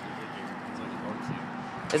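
Steady background noise of road traffic with a faint, even hum and no distinct events.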